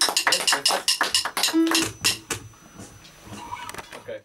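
Quick, brisk clapping from a few people, mixed with the wooden clicks of drumsticks struck together, at the close of a song. It thins out after about two and a half seconds, leaving a few scattered claps. A short low note sounds once about midway.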